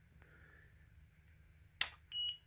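Faint room tone, then near the end a single sharp click: the power switch of an Explore Scientific EXOS-2GT GoTo mount being switched on.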